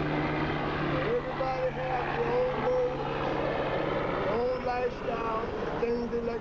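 Street ambience: a steady engine drone from passing traffic or an aircraft overhead, fading out a little past halfway, with voices in the background.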